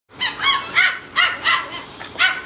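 Seven-week-old toy schnauzer puppies barking in play: about five short, high-pitched barks in quick succession.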